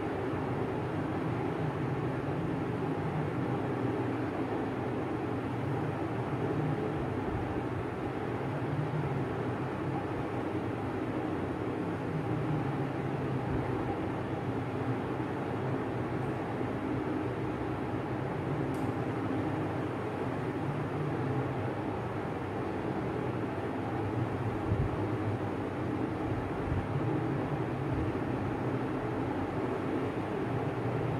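Steady low background rumble with hiss, unchanging throughout, with no distinct events standing out.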